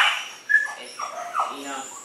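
A dog whimpering: a short high whine, then a few brief whines in quick succession.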